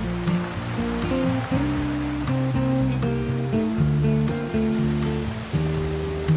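Slow, gentle classical guitar playing plucked notes and chords, over a steady wash of ocean waves breaking on a beach.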